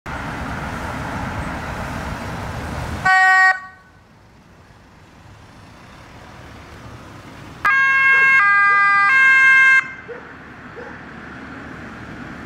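Police cars on an emergency run passing with tyre and engine noise. About three seconds in a short, loud horn blast sounds, and near eight seconds a two-second siren burst steps high-low-high.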